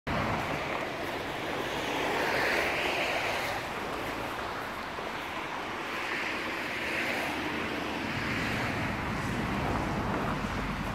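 Passing road traffic, its tyres hissing on a wet road, with two swells as vehicles go by, over a steady rush of outdoor noise.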